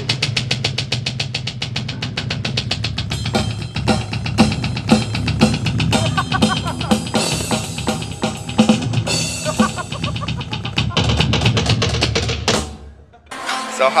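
Drum kit being played: a rapid, even run of strokes for the first few seconds, then a looser pattern of hits with bass drum, stopping suddenly near the end.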